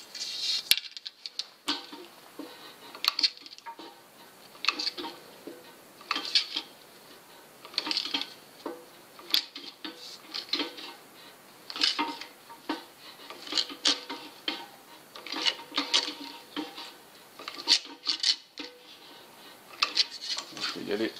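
Floor-standing sheet-metal stretcher working a zinc strip: its jaws clamp and stretch the strip's folded flange with a metallic clack every second or two, and the strip clinks as it is moved along between strokes. The stretching lengthens the angled flange so the strip curves into a ring.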